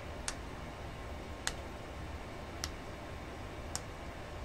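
Rubber key-contact pads of a synthesizer keybed snapping into their holes in the contact circuit board as each is pressed in with a small Allen wrench. Four small, sharp clicks come a little over a second apart, over a faint low hum.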